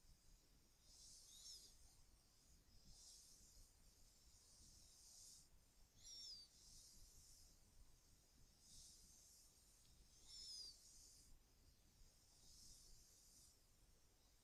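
Near silence: faint room tone with soft pulses of high hiss about every two seconds, and three faint descending chirps.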